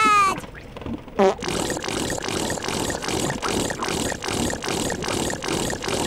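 The Tubby Custard machine's sound effect as it pumps custard into the bowl: a falling toot at the start, a short falling glide about a second in, then an even, squelchy pulsing of about three or four beats a second.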